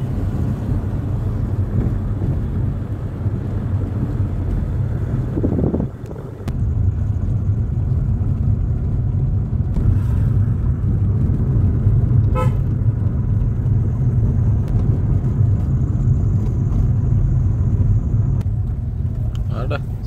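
Car driving, heard from inside the cabin: a steady low rumble of engine and road noise, broken briefly about six seconds in. A short high toot sounds about halfway through.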